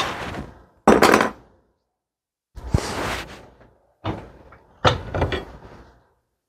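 Five sharp knocks and clanks, each fading out within a second, as a steel brake pedal arm and its bracket are handled and worked at a bench vise.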